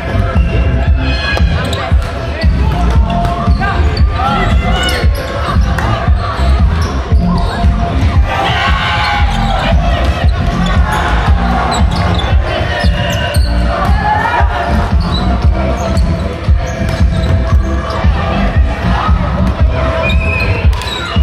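Volleyballs being hit and bouncing on a wooden court in a large sports hall, a steady run of thuds, with players calling out now and then and music in the background.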